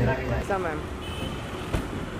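People's voices in the first second, giving way to steady street background noise, with one sharp click near the end.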